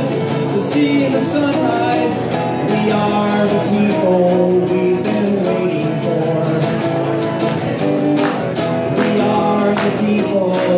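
A man singing while strumming an acoustic guitar, a live folk song with steady strumming.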